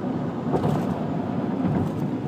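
Steady road and engine noise heard inside the cabin of a vehicle moving at highway speed.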